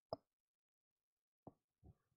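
Near silence between speakers, with one faint short click just after the start and two fainter ticks near the end.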